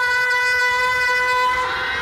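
One long note held at a steady pitch in a devotional worship song, fading about a second and a half in.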